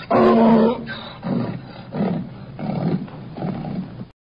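A donkey braying: one loud call in the first second, then four shorter, weaker heaves that fade away.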